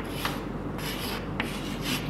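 Chalk drawing on a blackboard: about four short rubbing strokes as lines and wheel circles are drawn.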